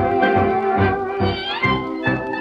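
A 1935 dance orchestra plays an instrumental passage of a fox trot, transferred from a Melotone 78 rpm record. Held chords give way to a rising, sliding lead phrase about one and a half seconds in.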